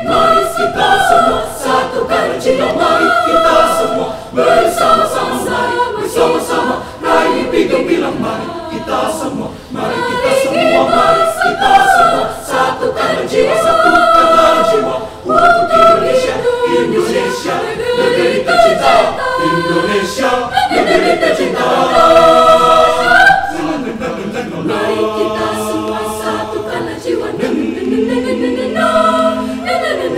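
Mixed high-school choir singing a cappella, several voice parts in harmony, with sharp percussive clicks through the first half. The singing turns softer for the last few seconds.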